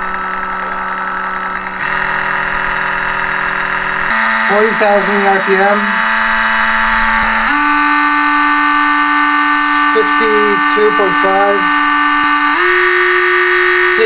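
Electric skateboard brushless motor spinning unloaded under a FOCBOX Unity dual motor controller on a 14S battery, running with a steady whine whose pitch steps up four times as the speed is raised in a max eRPM test.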